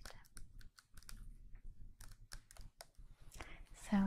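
Long fingernails tapping and clicking on a small plastic spray bottle of leave-in conditioner while handling it, a run of irregular quick light clicks.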